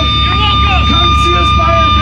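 People talking over the steady hum of live-band amplifiers between songs, with a low rumble and a thin, steady high tone.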